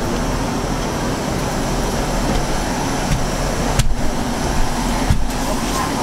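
Steady hum inside a diesel multiple-unit train carriage standing at a platform, its engine idling under the air-conditioning noise, with a couple of brief knocks about four and five seconds in.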